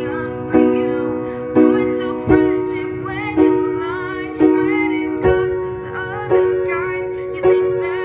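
Piano chords struck about once a second, eight in all, each left to ring and fade before the next: the song's chord progression of E, B, D sharp minor and F sharp played through.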